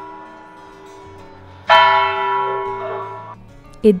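Zytglogge clock tower bell striking. The first stroke is still ringing and dying away, then a second, louder stroke comes about one and a half seconds in. Its ring is cut off abruptly about three seconds in.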